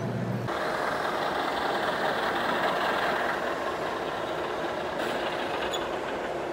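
Sound module of an RC model fire engine playing a steady truck engine sound that comes in about half a second in and changes slightly near the end.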